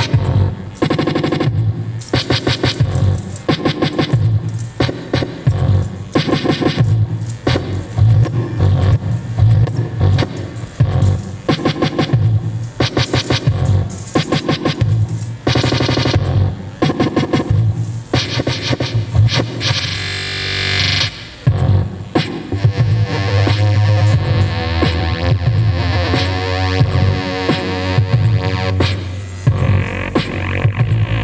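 Live beatbox electronic music: a beatboxed rhythm into a microphone over heavy bass, layered with keyboard synthesizer. About twenty seconds in a hissing swell rises, and after it the music turns to steadier held synth tones over the beat.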